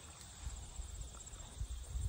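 Faint, irregular low thumps and rumble on a handheld phone's microphone: wind buffeting and handling noise as it is carried.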